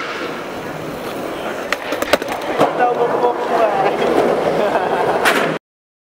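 Skateboard wheels rolling on a concrete court, with several sharp clacks of the board hitting the ground around two seconds in and again near the end. The sound then cuts off suddenly.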